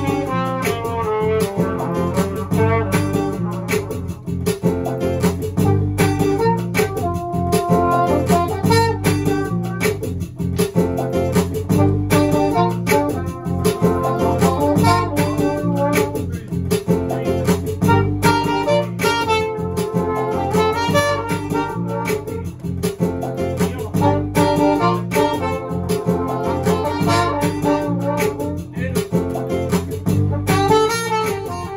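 Live music: a small pocket-style trumpet playing a melodic solo over strummed acoustic guitar with a steady rhythm.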